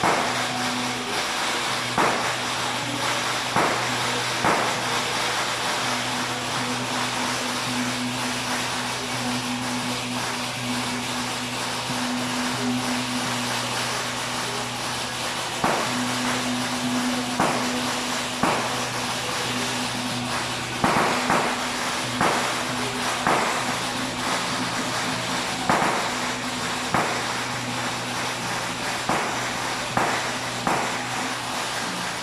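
Procession music: a steady low drone with sharp percussion strikes every second or two, fewer in the middle stretch.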